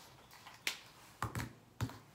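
A few sharp clicks, spread about half a second apart, from a whiteboard marker being handled at the board.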